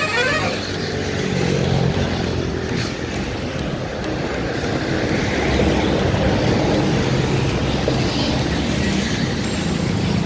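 Electric locomotive approaching slowly at the head of a train: a steady low hum and rumble, a little louder from about halfway through.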